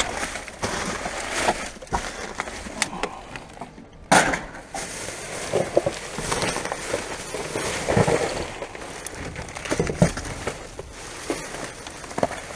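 Plastic bin bags, wrappers and paper rubbish rustling and crinkling as gloved hands rummage through them, with irregular sharp crackles and knocks. The loudest crack comes about four seconds in.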